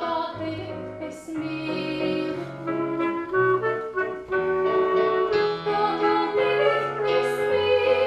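Clarinet playing a melody of held notes in the Swedish folk-music manner, with piano accompaniment underneath.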